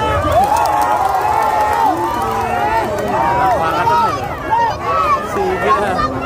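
Crowd of spectators around a boxing ring shouting, many voices calling out over one another without a break.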